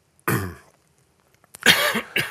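A man clearing his throat twice, a short one about a quarter second in and a louder one near the end.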